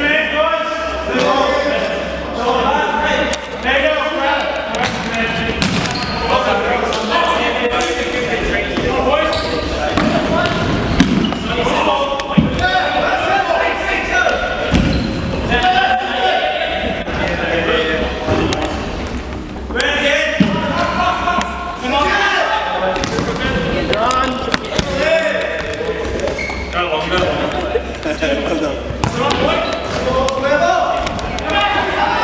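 A futsal ball being kicked and bouncing on a hardwood sports-hall floor, sharp thuds every few seconds with two of the loudest close together near the middle. Players and onlookers are calling out continuously over it.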